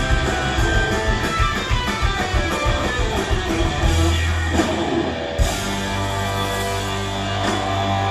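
Live hard-rock band playing: electric guitar with bass and drums, busy, fast-moving guitar lines for the first few seconds. About five seconds in, the band settles onto a held low chord with cymbal crashes.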